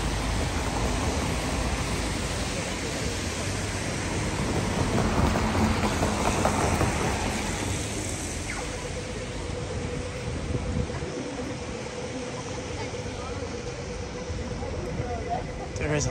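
Traffic on a wet city street: road noise that swells around the middle as a vehicle passes. A faint steady hum runs through the second half.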